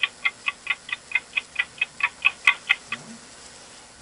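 Fast, even clock-like ticking, about four or five ticks a second, that stops a little before three seconds in.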